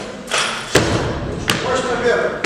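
Barbell with bumper plates cleaned from the floor to the shoulders on a wooden weightlifting platform: two sharp thuds about three-quarters of a second apart as the lifter's feet stamp down and the bar is caught.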